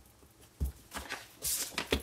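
A few light knocks and clicks of a clear acrylic stamp block and rubber stamp being handled on a craft mat, with a brief swish of card sliding across the mat about a second and a half in.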